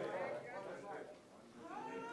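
Faint voices of church congregation members calling out drawn-out, wavering responses while the preacher is silent.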